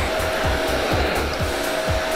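H.Koenig TC801 bagless canister vacuum cleaner, a 2200-watt model, running with its floor brush on a tiled floor: a steady rush of air with a constant motor whine.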